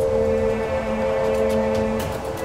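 Background music: a sustained, held chord of a few steady notes, with a lower note joining just after the start.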